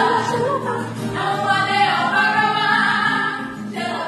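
A small group of women singing a hymn together in Yoruba, accompanied by acoustic guitars.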